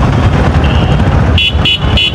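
Busy street traffic with a steady engine rumble. A vehicle horn sounds one held note just before the middle, then several short quick toots, about three a second, near the end.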